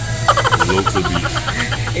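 A woman laughing: a quick run of rhythmic 'ha' pulses that slowly fall in pitch, starting just after the beginning.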